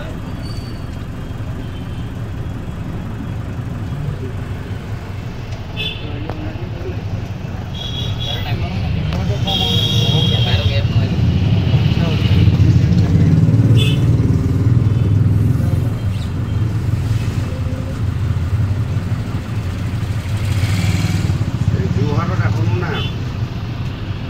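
Steady low engine and road rumble of a vehicle riding along a town street, swelling about halfway through, with a few short high-pitched tones in the first half.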